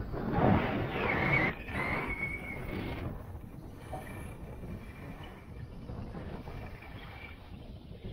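Skis or a board sliding and scraping over packed, groomed snow on a downhill run, with wind on the action-camera microphone. It is louder for the first three seconds with a few sweeping surges, then quieter.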